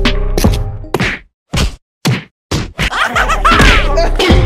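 Background music with a beat fades out about a second in. It leaves three short, sharp whack-like hits about half a second apart. Then the music comes back near the end with gliding, sweeping tones.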